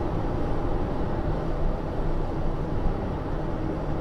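Steady in-cabin driving noise from a Mazda 323F at motorway speed: a constant low rumble of tyres and wind, with a faint steady engine drone underneath.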